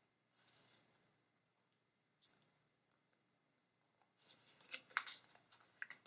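Light handling of paper and adhesive mounting squares: short, soft rustles and crackles as a paper label is picked up and foam mounting squares are peeled from their backing. The crackling is busiest in the last two seconds.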